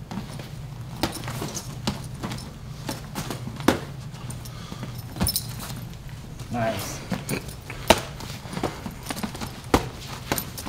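Boxing gloves smacking against gloves and forearms as punches are thrown and blocked. The hits are sharp and irregular, about one every second or so, the loudest near the end, over a steady low hum.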